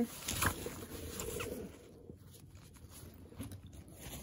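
Soft rustling and small ticks of a diaper bag's fabric lining and pockets being handled, growing quieter after about two seconds.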